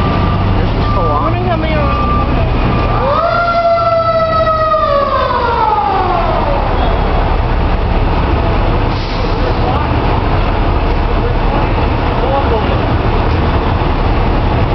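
A fire engine's siren rises quickly once about three seconds in, then slowly winds down over the next four seconds, over the steady low rumble of idling fire trucks and street noise.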